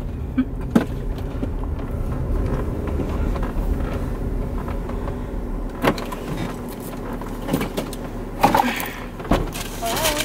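Car idling, heard from inside the cabin as a steady low rumble, with several sharp clicks and knocks of things being handled, mostly in the second half.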